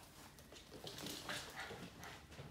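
A Boston terrier whimpering in a few short sounds during the second half.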